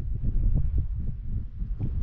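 Wind buffeting the microphone: an uneven low rumble that swells and dips.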